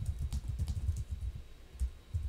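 Typing on a computer keyboard: irregular key clicks with dull low thumps, slowing and thinning out toward the end.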